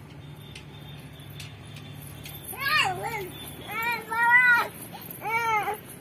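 A young child's voice: three drawn-out, high-pitched wordless calls or cries, each rising and falling in pitch, starting about two and a half seconds in, over a faint steady background hum.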